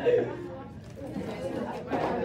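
Several voices talking over one another: classroom chatter with no single clear speaker.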